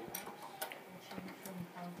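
Light, irregular taps and clicks of a stylus on an iPad's glass screen as handwriting is rewritten, over faint room hum and murmur.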